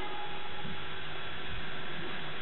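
Steady electrical mains hum with hiss underneath from the sound system.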